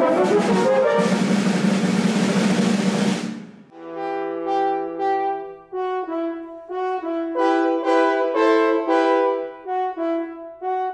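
French horn quartet playing. For the first three and a half seconds a loud held chord sounds over drum kit and cymbals, then breaks off abruptly. After that the four horns play alone in close harmony, in short separate chords.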